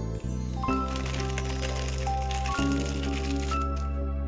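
Soft background music with slow chord changes, over irregular light crackling from a plastic bag and slime being handled.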